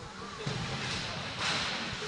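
Ice hockey rink sound during play: skates scraping and carving on the ice, louder about halfway through, with faint voices in the background.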